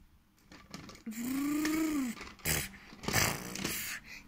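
A child's voice imitating a vehicle engine, one hummed "vroom" about a second long that rises and then falls in pitch, as a toy Lego garbage truck is pushed along. Two short scraping noises follow near the end.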